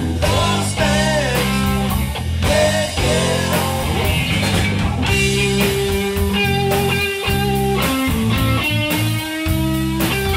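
Live rock band playing an instrumental break: an electric lead guitar with bent notes early on and long held notes later, over electric bass and drum kit.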